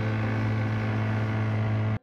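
Outboard motor pushing an inflatable dinghy at steady speed, a constant drone that cuts off suddenly at the end.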